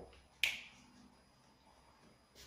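A single sharp click about half a second in, followed by faint room tone.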